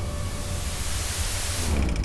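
Sound-design stinger under a horror title card: a dense steady hiss of noise over a deep low rumble, loud throughout, swelling slightly near the end.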